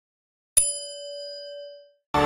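A single notification-bell chime sound effect, struck once about half a second in and ringing for over a second as it fades away.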